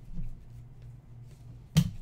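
A single sharp snap of trading cards being handled and squared up by hand, near the end, with a faint soft tap shortly after the start. A low steady hum runs underneath.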